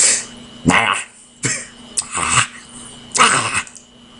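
A person making a string of short, rough cough-like throat noises, about five in four seconds with short pauses between.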